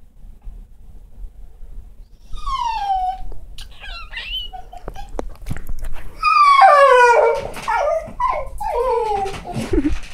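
A domestic cat meowing repeatedly: a series of long falling cries, the loudest a little past the middle, with a few short, higher chirps about four seconds in.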